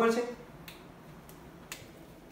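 A man's voice trails off at the start, then a quiet room with a few faint, sharp clicks about two-thirds of a second, one and a quarter seconds and one and three-quarter seconds in.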